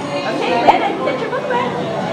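Indistinct voices and chatter echoing in a large indoor hall, with one sharp click about a third of the way through.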